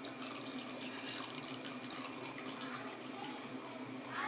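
Bathwater splashing and trickling as a small child plays in a tub, with a run of light splashes through the first two seconds or so.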